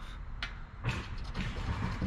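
A scratcher coin scraping the coating off a scratch-off lottery ticket in short rough strokes, with a light tap about half a second in.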